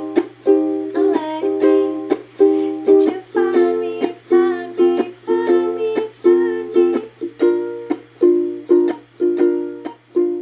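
Solo ukulele strumming chords in a steady rhythm of about two strums a second, each chord ringing on between strums, with no voice: the instrumental outro of the song.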